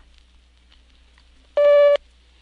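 Filmstrip frame-advance tone: a single short steady beep, about half a second long, near the end, the cue to turn to the next frame. Before it there is only a faint hum.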